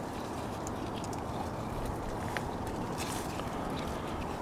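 Steady outdoor background hiss with a few faint small clicks as fig leaves and branches are handled and figs are picked by hand.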